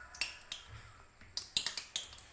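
Vettu cake dough ball deep-frying in hot oil in a kadai, the oil sputtering with sharp, irregular pops and crackles.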